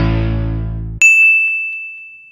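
The last chord of the intro music dies away. About a second in it is cut off by a single bright ding from a notification-bell sound effect, which rings on and fades.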